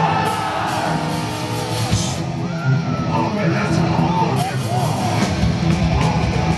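Live metalcore band starting a song: a held, distorted electric guitar note rings over a crowd yelling and cheering in a large hall, and the full band comes in near the end.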